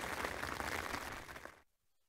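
Rain hammering down on a tent's fly sheet, heard from inside the tent as a dense patter. It fades out and stops about one and a half seconds in.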